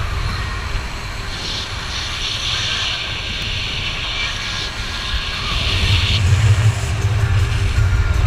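Motorboat under way: steady engine rumble mixed with wind on the microphone and water rushing past. The low rumble grows louder about six seconds in.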